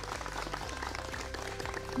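A seated crowd clapping hands in sustained applause, a dense patter of many claps, with a faint music bed underneath.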